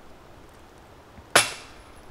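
A putted disc striking the metal chains of a disc golf basket: one sharp metallic clash a little over a second in, ringing briefly as it dies away.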